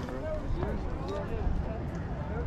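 Faint conversation of other people in the background, with a steady low rumble underneath.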